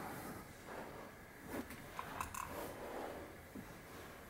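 Faint strokes of a dry-erase marker writing on a whiteboard, with a few short scratchy strokes around the middle over quiet room tone.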